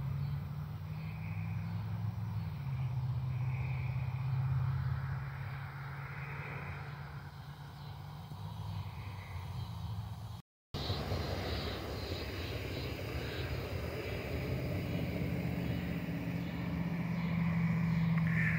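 A steady low mechanical hum with faint noise above it, which drops out to silence for a moment a little past halfway.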